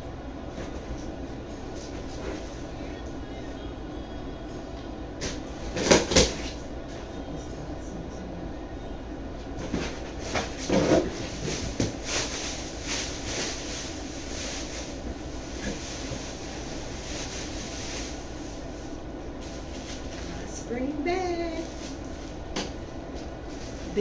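A cardboard shipping box being opened by hand: a loud knock on the box about six seconds in, then rustling and crinkling as the plastic-wrapped contents are pulled out, over a steady low background hum.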